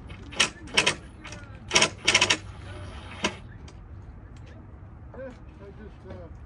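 About six short scraping strokes of a hand tool or abrasive being worked along the edge of a plywood piece to smooth it, bunched in the first three seconds and then stopping.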